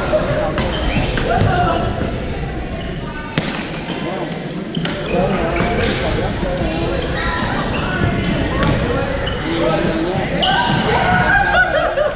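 Badminton rallies in a large indoor gym: sharp, irregular cracks of rackets striking shuttlecocks, heard over the echoing chatter and calls of players across the hall.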